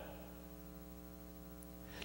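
Faint, steady electrical mains hum, a low buzz with evenly spaced overtones, from the recording's audio chain.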